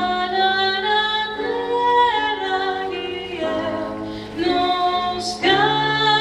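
Several voices singing together in harmony, mostly unaccompanied, holding long notes that change about once a second, with a sharp sibilant hiss about five seconds in.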